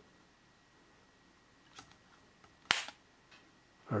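A single sharp plastic click a little under three seconds in, with a couple of fainter taps before and after it: a charger plug snapping into the base connector of an Ericsson T10 mobile phone.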